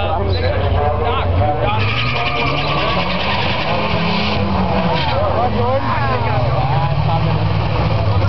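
Two cars, a Chevrolet Cobalt and a Dodge SRT-4, launching side by side on a drag strip; their engines rise in pitch as they accelerate away about two seconds in, with a rushing hiss during the run. Spectators talk over it.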